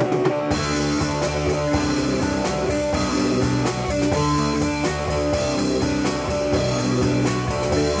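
Instrumental rock music with guitar and drum kit; the full band comes in about half a second in.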